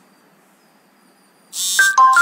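Quiet room tone, then about one and a half seconds in a sudden loud sound: a hiss with steady, beep-like high tones that step down in pitch near the end.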